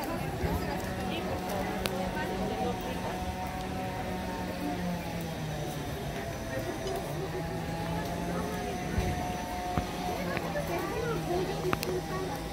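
Indistinct background voices over a steady low tone that breaks off now and then.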